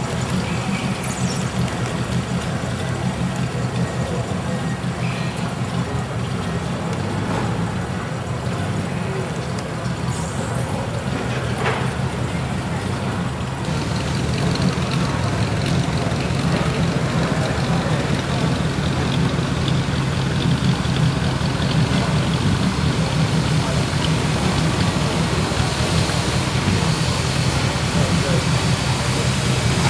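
Hot rod roadster engine idling with a lumpy, pulsing note as the car creeps slowly along, a little louder from about halfway through.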